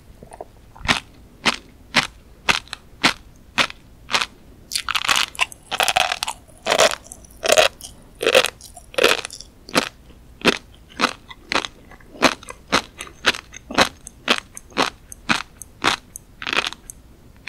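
Close-miked chewing of a mouthful of flying fish roe (tobiko), the small eggs popping between the teeth in sharp, crisp clicks about twice a second. The pops come thicker and louder in the middle.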